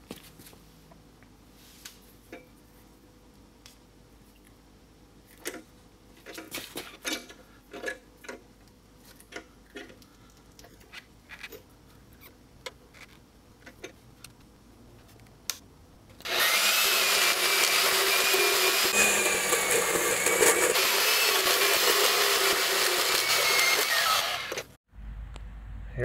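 Small portable metal-cutting bandsaw cutting through a chrome-plated steel tube axle. It starts suddenly about sixteen seconds in as a loud, steady rasp with a wavering high squeal, and stops abruptly about nine seconds later. It is preceded by faint scattered clicks and knocks of handling.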